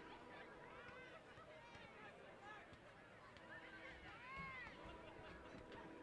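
Near silence over a soccer field: faint, distant voices calling out, the clearest a little past four seconds in, over a faint steady hum.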